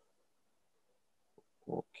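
Near silence with a faint click, then a short spoken 'okay' near the end.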